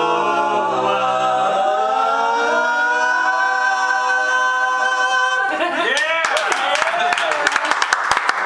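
Barbershop quartet of three men and a woman singing the final chord of a song a cappella, the voices holding it for several seconds while the low part slides away. About five and a half seconds in the chord stops and the listeners break into cheers and clapping.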